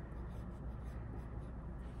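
Faint scratching of a writing tool on lined paper as words are written out by hand.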